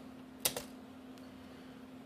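One sharp click about half a second in and a faint tick a little after a second, over a low steady hum.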